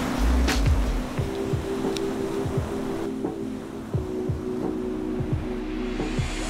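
Background music: sustained chords over a low beat that thumps about twice a second.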